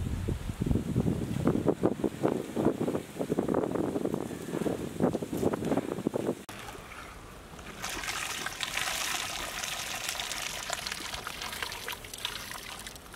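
Water pouring and dribbling back into a pot as a large perforated skimmer full of rice is lifted out and drained, with splashing as the rice is tipped into the biryani pot. About six and a half seconds in this gives way to a steadier, higher hiss with small crackles.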